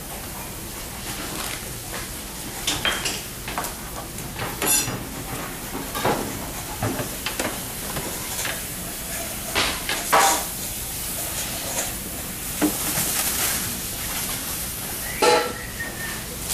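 Kitchen clatter: scattered clinks and knocks of dishes, pans and utensils over a steady hiss.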